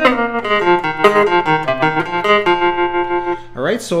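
Fender Stratocaster electric guitar through an amp playing a single-note blues lead lick off the pentatonic scale, each note ringing on before the next. The phrase stops about three and a half seconds in and a man starts talking.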